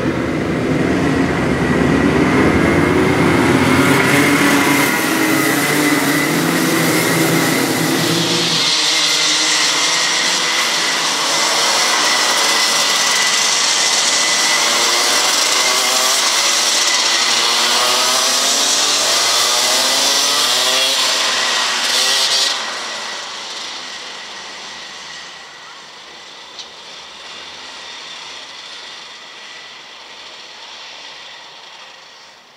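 A pack of Rotax Junior two-stroke racing kart engines running hard together, their many notes overlapping and rising and falling with speed. About 22 seconds in the sound drops sharply and the engines are fainter after.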